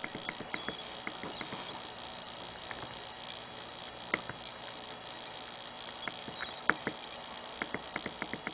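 Faint, irregular clicks of an LG Voyager phone's buttons being pressed to scroll through its menus, over a steady hiss; two clicks stand out, about four seconds in and near seven seconds.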